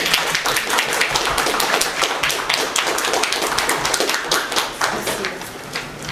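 Audience applauding: many hands clapping densely, thinning out near the end.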